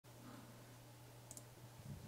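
Two quick, faint computer mouse clicks about a second in, over a steady low hum.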